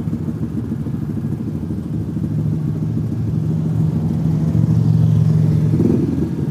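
Motorcycle engines idling: a steady low engine hum that grows a little louder in the second half.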